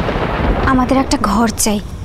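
A loud, rumbling crash of thunder, heaviest in the first half-second or so, with a voice heard over it in the second half.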